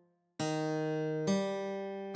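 Single guitar notes played slowly from the tab: a short silence, then two plucked notes about a second apart, each ringing on until the next.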